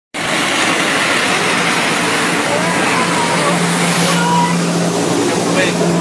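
Water-powered jetpack flying low over the water: a loud, steady rush of water jets and the engine that drives them.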